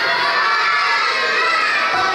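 A roomful of children shouting and cheering together, many voices at once without a break.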